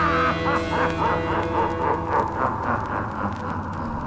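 Oi! punk rock band music winding down at the end of a song, the beat keeping about four strokes a second as the whole band fades lower.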